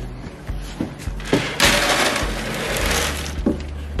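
A scoop of dry feed poured from a plastic scoop into a plastic feed tub: a rushing rattle of about two seconds that starts near the middle, after a few light knocks of the scoop.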